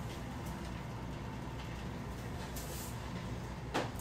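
Handheld garment steamer running steadily as it is held against the fabric, a low even hum.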